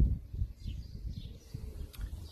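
Faint garden birdsong, two short chirps about a second in, over a low, uneven rumble.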